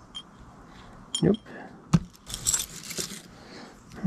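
Small metal jewelry jingling and clinking as it is handled: dog tags on a ball chain, chains and rosary beads rattling in a jewelry box. A couple of sharp clicks come about one and two seconds in, then a longer jingle just after two seconds.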